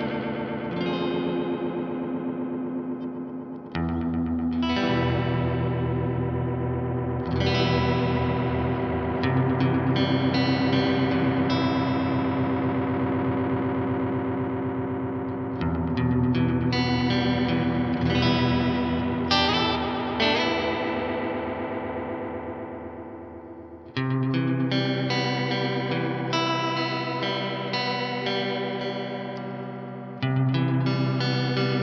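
Electric guitar played through a TC Electronic Alter Ego X4 delay pedal in its TR Organ oil-can delay mode, with its fixed-speed modulation on the repeats. Chords are struck about four times and each is left to ring out and fade, with a few single notes between.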